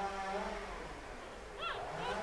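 Newborn puppies whining and squealing: a low drawn-out whine at the start, then a short high squeal that rises and falls near the end.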